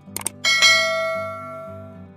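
Two quick clicks, then a bright bell chime that rings out and fades over about a second and a half: a notification-bell sound effect for clicking a subscribe bell. Soft background music runs underneath.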